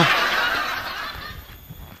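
A person's breathy snickering laugh, fading out over about a second and a half.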